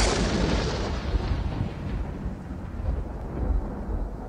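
A deep boom that dies away in a long, rumbling decay, the low rumble lasting longest.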